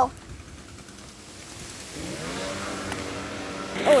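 A motor engine rises in pitch and grows louder about two seconds in, then runs at a steady pitch.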